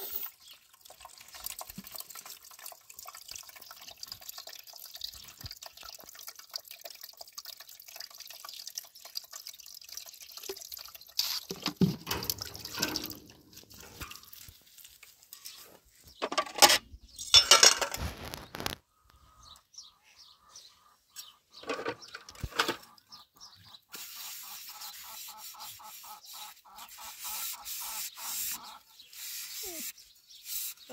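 Dishes being washed by hand in a metal basin of water: water splashing and dripping, with louder bursts of sloshing and handling of plates about twelve, seventeen and twenty-two seconds in.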